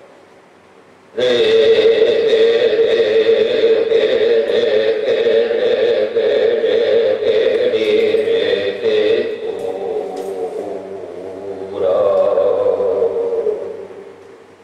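A voice chanting in long held notes, from an improvisation on a Korku death song: after a near-silent first second it comes in suddenly and holds one steady note for about eight seconds, then softens, and a second held note comes in near the end and fades.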